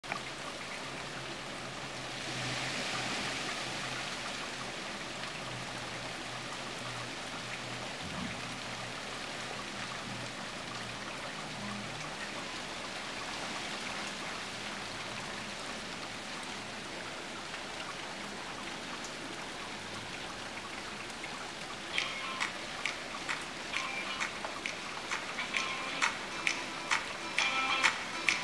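Rain falling steadily, an even hiss. About 22 seconds in, a song's intro comes in over it with a regular beat of sharp clicks that grows louder toward the end.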